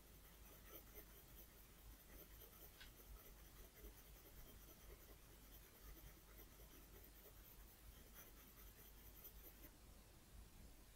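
Faint scratching of an HB graphite pencil on paper, shading in small tight circles with the pencil just resting on the paper; it stops just before the end.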